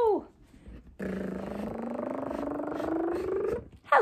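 A person's buzzy vocal sound effect, like a lift going up, rising steadily in pitch for about two and a half seconds as the view is raised.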